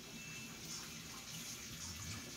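Faint, steady hiss-like background noise with no distinct events.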